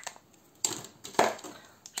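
Plastic binder pockets and paper crinkling as they are handled, in a few short rustling bursts, the loudest about a second in, after a click at the start.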